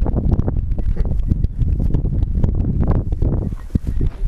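Strong wind buffeting the camera's microphone on an exposed hillside: a loud, uneven rumble that flutters rapidly.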